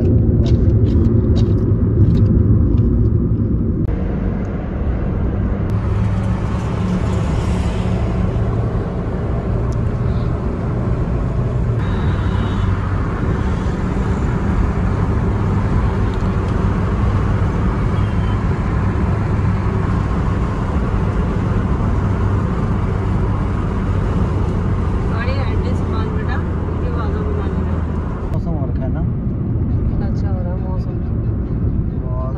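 Road noise heard inside a moving car: a steady low engine hum with tyre and wind noise, changing abruptly in character a few times.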